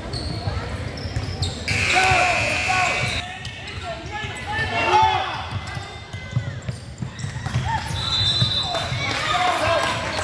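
Basketball game play on a hardwood gym floor: the ball bouncing and feet thudding, with short sneaker squeaks, under indistinct voices of players and spectators, echoing in the large hall.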